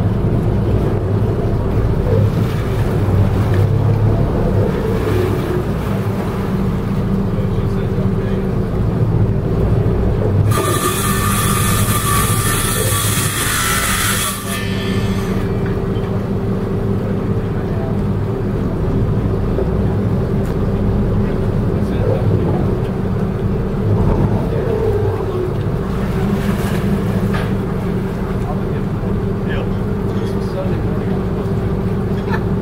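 Twin Cummins diesel engines of a Meridian 441 with Zeus pod drives running at low speed while backing stern-in to a dock, a steady low hum. About ten seconds in, a loud hiss lasts about four seconds.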